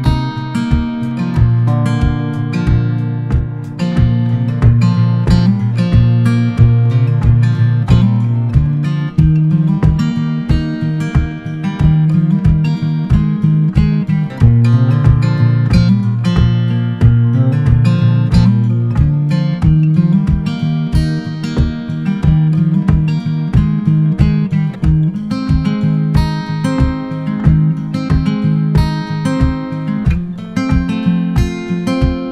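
Background music: acoustic guitar, plucked and strummed with a steady rhythm.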